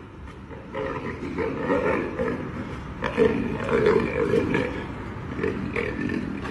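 A young lion growling in repeated rough bursts from about a second in, loudest in the middle, as it is grabbed and carried off.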